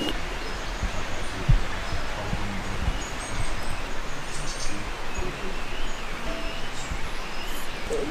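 Outdoor ambience: a steady rush of wind through leafy trees, with faint bird chirps now and then.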